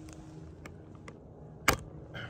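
Faint steady background noise with a few small ticks and one sharp click near the end.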